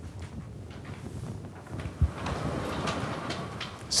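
Vertical sliding whiteboard panels rolling along their tracks with a low rumble, stopping with a knock about two seconds in. A marker then scratches across the whiteboard for the rest of the time.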